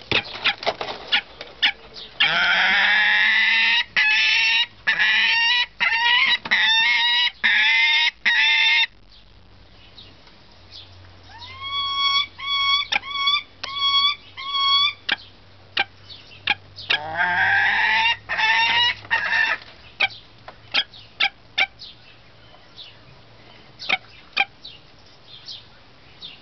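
Saker falcons giving harsh, rapidly repeated calls in three bouts: a long loud run early on, a string of about six shorter, clearer calls in the middle, and another harsh run later. These are the birds' aggressive calls defending the nest during incubation. Sharp clicks are scattered between the calls.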